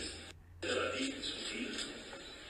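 A man speaking, with a short break in his voice about half a second in.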